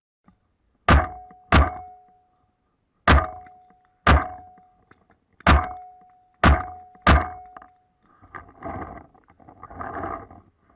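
Paintball marker firing seven sharp shots at uneven intervals, in pairs and singles, each with a short metallic ring. A softer, rougher noise follows near the end.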